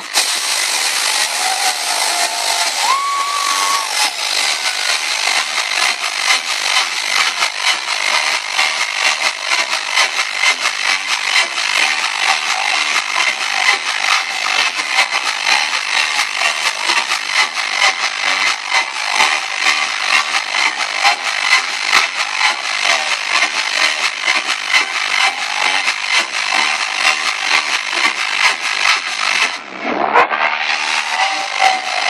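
Loud trance music on a club sound system, recorded distorted through a phone microphone, with a steady driving beat and the bass missing.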